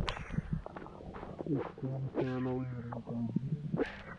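A man speaking in short phrases outdoors, including one drawn-out vocal sound near the middle, over soft scattered steps and scuffs on wet, muddy ground.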